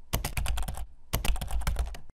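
Computer-keyboard typing sound effect: two quick runs of key clicks, each about a second long, with a short pause between.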